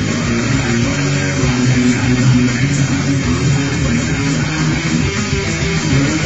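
Yamaha Pacifica electric guitar playing a fast, continuous metal riff, loud and without a break.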